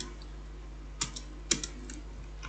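Computer keyboard keystrokes: a few quick key presses about a second in and another short cluster around a second and a half, as a word of code is deleted and retyped, over a steady low hum.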